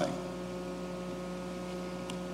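Steady electrical hum with faint room noise in a pause between sentences of a talk.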